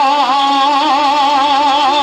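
A young man singing one long held note with a wavering vibrato, in the style of Pothwari sher khwani (sung poetry).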